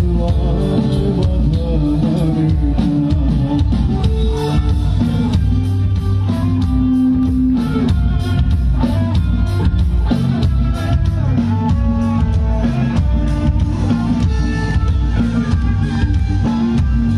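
Live band playing an instrumental passage: electric guitar and keyboard over bass and a drum kit keeping a steady beat.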